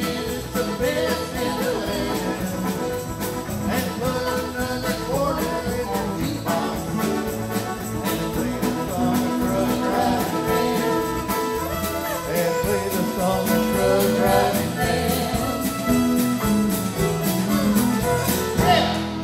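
Live country band playing an instrumental break with electric guitar, fiddle and drums keeping a steady beat.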